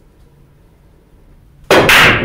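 Pool break shot on a ten-ball rack: near the end, a sudden sharp crack as the cue ball smashes into the racked balls, followed by the clatter of balls scattering across the table.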